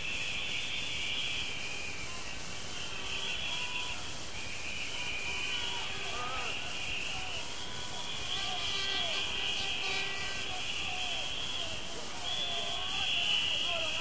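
Rave crowd blowing whistles and shouting: a steady chorus of many high, wavering whistles over faint cheers.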